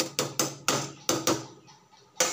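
A slotted metal spatula knocking against an aluminium pressure cooker, about six quick sharp clanks in the first second and a half, each with a short ring.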